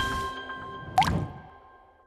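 Held notes of intro music fading out, with a single water-drop 'plop' sound effect about a second in: a quick upward-gliding blip.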